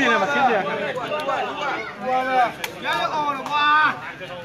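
Spectators' voices talking and calling out around the court, several people at once, with a few sharp clicks among them.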